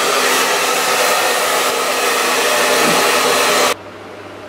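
Handheld hair dryer running steadily on high, blowing through the hair, then switched off suddenly near the end.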